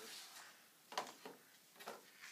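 Cardboard packaging being handled: two short knocks, about a second in and near the end, as the flat white accessory boxes are lifted out of the iMac box's top tray.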